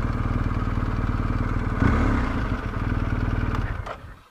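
Motorcycle engine running at low revs as the bike rolls slowly over rough ground, swelling slightly about halfway through, then cut off just before the end.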